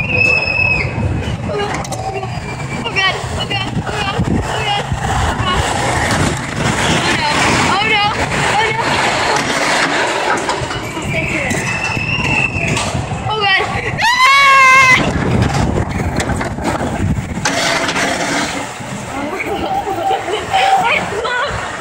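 Roller-coaster riders shrieking, yelling and laughing over the steady rush of wind and the rumble of the cars on the track. There is a held squeal at the start and one long, wavering yell about two-thirds of the way through.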